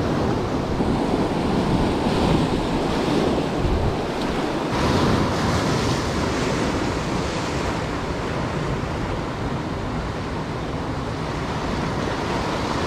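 Ocean surf breaking and washing over the rocks of a jetty, a steady rush that swells louder twice, about two and five seconds in.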